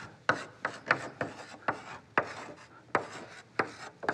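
Chalk writing on a chalkboard: about a dozen short scratchy strokes and taps in quick succession as letters are drawn.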